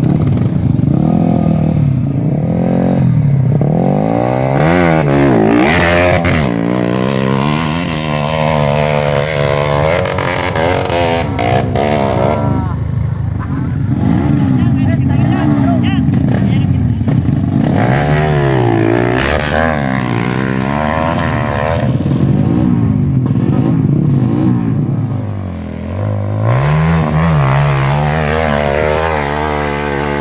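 Several trail motorcycle engines idling and being revved over and over, their pitch rising and falling every second or two.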